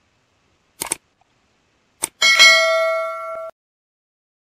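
Two mouse-click sound effects, about a second apart, then a notification-bell ding: a chime of several steady tones that rings for about a second and cuts off suddenly.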